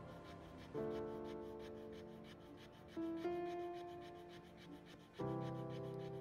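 Fire plough at work: a wooden stick rubbed rapidly back and forth along a groove in a wooden hearth board, a fast, even scraping rhythm of friction strokes, working the hearth towards an ember. Soft, slow background music with held notes plays over it and is the louder sound.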